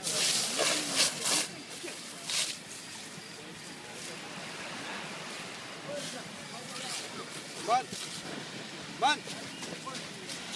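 Indistinct voices of bystanders over a steady rushing noise, with two short shouted calls near the end. Loud bursts of rushing noise fill the first second and a half and come again about two and a half seconds in.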